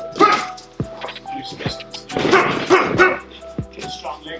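Gloved punches landing as sharp slaps during boxing sparring, over background music. Loud, short voiced calls cut in about a quarter-second in and again between about two and three seconds in.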